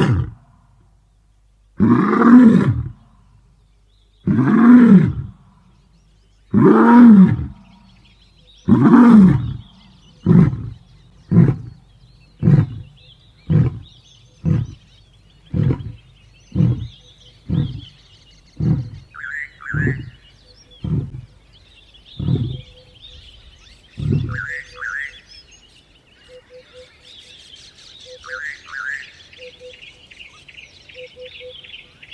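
A large animal roaring: five long, loud roars about two seconds apart, then about a dozen shorter grunts roughly one a second that grow fainter and stop a few seconds before the end. Birds chirp over the last part.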